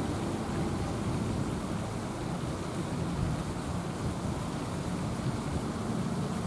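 Steady low outdoor background rumble, even throughout, with no bird calls standing out.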